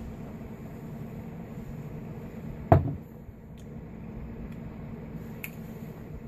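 Steady low room hum, broken once about three seconds in by a single short, sharp knock, with a couple of faint clicks after it.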